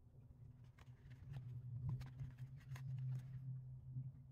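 Paintbrush working thick acrylic gouache on a watercolor postcard: a run of faint, irregular soft scrapes and ticks for a couple of seconds, starting about a second in and stopping just before the end, over a low steady hum.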